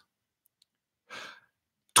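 Near silence, broken about a second in by one short, faint breath from a man at a close microphone.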